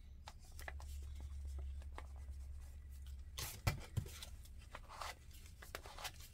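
Faint rustling and light tapping of paper as small paper cutouts are handled and pressed down onto a journal page by hand, with a couple of sharper taps a little past the middle.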